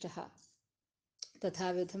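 A woman's voice speaking Sanskrit: two short phrases with a silent gap of under a second between them.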